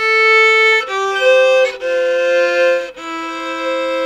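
Solo fiddle playing a slow country fill of four bowed, held notes. From the second note on it plays double stops: the lower note steps down each time while the upper note holds.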